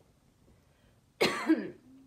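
A woman coughs once, a short single cough about a second in, from a lump in her throat.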